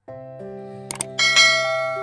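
Subscribe-button animation sound effect: steady held musical tones, a couple of mouse clicks about a second in, then a bright bell chime that rings out and slowly fades.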